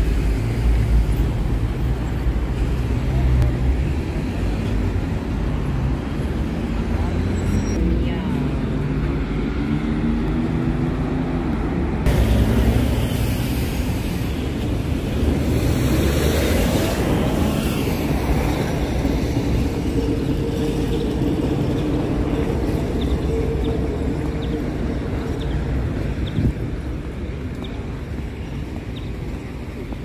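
Outdoor street ambience: road traffic passing, with a vehicle rising in pitch about halfway through, over a steady low rumble of wind on the microphone.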